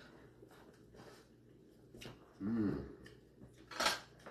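A quiet room with a brief wordless 'mm' from a person tasting about halfway through, then a sharp click near the end.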